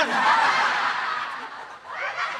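A sudden splash of water thrown over a person, at once followed by a group of people laughing, with a short dip near the end.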